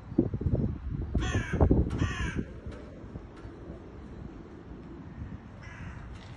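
Two harsh caws in quick succession from a large bird, with a fainter caw near the end. Low rumbling wind or handling noise on the microphone comes under the first caws.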